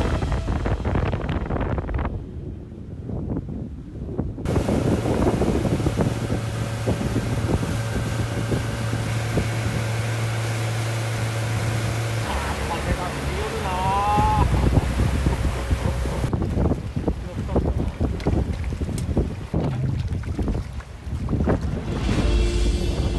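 Wind buffeting the microphone and water rushing past a small anglers' ferry boat under way, with the boat's engine humming steadily through the middle of the clip. The sound changes abruptly a couple of times.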